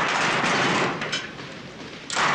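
Metal gym locker rattling as it is yanked at, a noisy clatter about a second long, with a shorter rattle just after.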